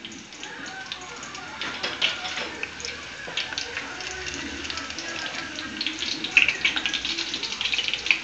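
Chopped green onions frying in hot oil in a pan on the stove: a steady sizzle with many small crackles and pops.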